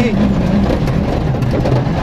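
Rally car engine heard from inside the cabin, its revs falling off right at the start and then staying low and uneven as the car slows for a tight junction, with steady road noise underneath.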